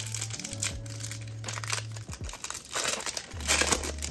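A foil Donruss Optic trading-card pack crinkling and tearing as it is pulled open by hand, loudest towards the end.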